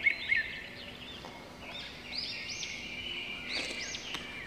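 Faint birds chirping: short high calls that arch up and down, several in a row, over a faint low steady hum.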